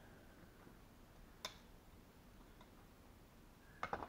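Near silence in a small room, broken by one sharp tap about a second and a half in and a quick cluster of taps near the end, from a pencil against a wooden board during marking out.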